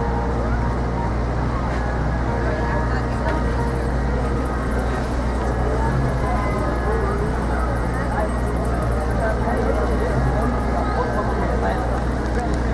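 Busy city street: a steady low rumble of idling and passing car traffic, with indistinct voices of passers-by throughout.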